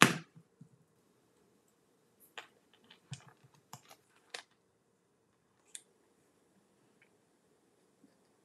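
Scattered light clicks and taps as small die-cut paper pieces are picked up and handled with fingernails on a craft sheet, with a sharper knock right at the start.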